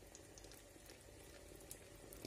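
Near silence with faint bubbling and a few soft pops from a pan of vegetables simmering in tomato sauce over low heat.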